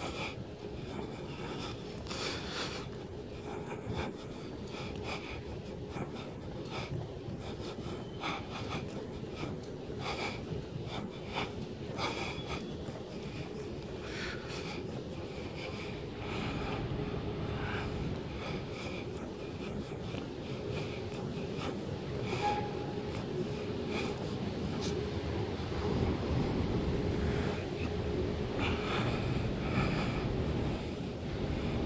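Footsteps on a tiled underpass floor with camera-handling noise, over a steady low hum that grows slightly louder about halfway through.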